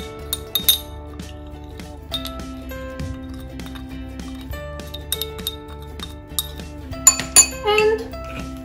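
Background music with light glass clinks as a small glass jar of dried herbs knocks against a glass mixing bowl. There are a few clinks in the first second and a louder cluster near the end.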